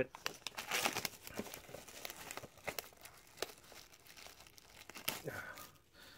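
Plastic shrink-wrap being torn and peeled off a Blu-ray SteelBook case: a run of irregular crinkling and crackling, busiest in the first couple of seconds and dying away near the end.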